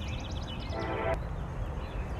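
Outdoor background sound: a steady low rumble, with a quick run of high bird-like chirps at the start and a short pitched call about a second in.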